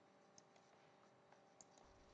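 Near silence: faint room tone with a few soft, sharp clicks at a computer as drawing tools are switched and ink is erased.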